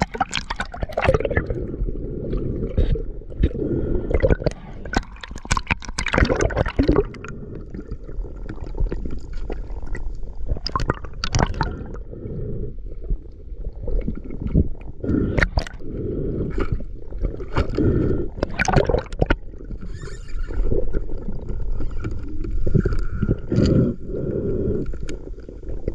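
Muffled water noise picked up by a submerged action-camera housing: rushing and gurgling water with frequent sharp clicks and knocks against the housing. It is splashiest near the start as the camera breaks the surface.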